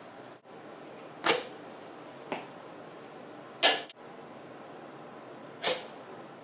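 Plastic cup flyers launched off a stretched rubber band: three sharp snaps or knocks, about a second in, just past midway and near the end, with a fainter tap between the first two.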